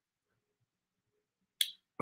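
Near silence, broken near the end by one short, sharp click.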